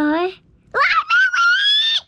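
A young child's excited squealing: a short call at the start, then a long, very high-pitched squeal from just under a second in, held with its pitch rising slightly.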